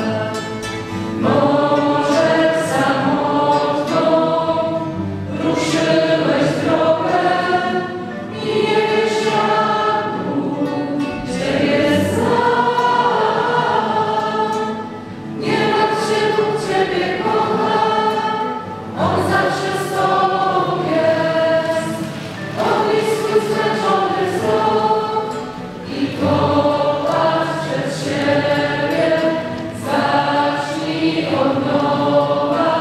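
A large congregation of young people singing a hymn together, in phrases a few seconds long with short breaks between them.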